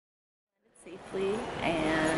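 Dead silence, then about two-thirds of a second in the sound cuts in abruptly to voices talking over a steady background din.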